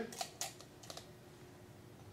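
A handful of light metallic clicks in the first second as a bar strainer is set onto a stainless steel shaker tin.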